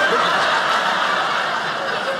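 Audience laughing, loudest at the start and easing off slowly.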